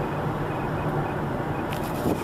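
Car cabin noise while driving: a steady rumble of road and tyre noise with a low engine hum, heard from inside the car.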